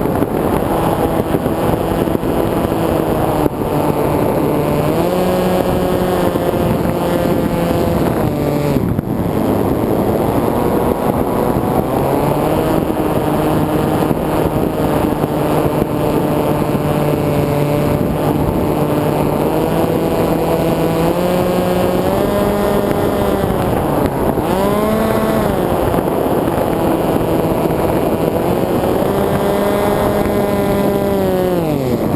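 Electric motor and propeller of an FPV flying wing, recorded onboard in flight, a buzzing whine whose pitch steps up and down with the throttle. It drops away briefly about 9 s in and again about 24 s in, then spools back up, with wind rushing over the microphone throughout.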